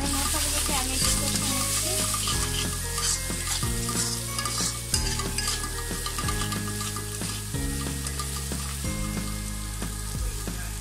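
Onion, green chilli and spice masala with prawns frying in hot oil in a metal pan, stirred with a spatula: steady sizzling with the spatula scraping through it.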